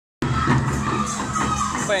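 Crowd of a street procession shouting and cheering, with a steady low hum underneath.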